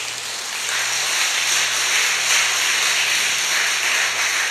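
A large congregation applauding, a dense, steady clapping that grows a little louder after the first second.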